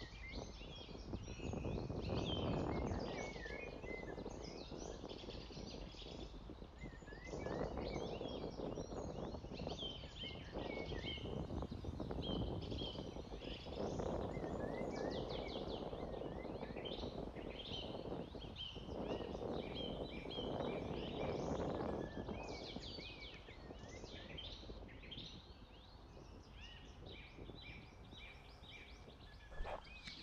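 Several songbirds singing and chirping, a busy chorus of short calls and trills, with a low rushing noise that swells and fades several times underneath.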